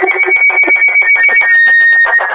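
A handheld megaphone sounding a loud electronic alarm tone, a high pitch chopped into rapid even pulses that steps down slightly in pitch about one and a half seconds in.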